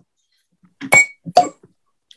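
Cork pulled from a glass bourbon bottle: a short pop with a clear ringing note just before a second in, then a lighter clink about half a second later.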